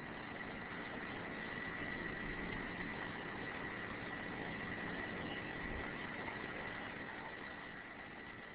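Steady recording hiss with a thin, high, steady whine running through it: the background noise of the narration microphone between sentences.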